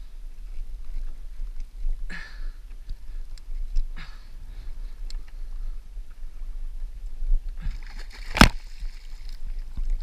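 Water sloshing and splashing against the hull of a sit-on fishing kayak, in a few short washes. A single sharp knock comes a little after eight seconds in, the loudest sound.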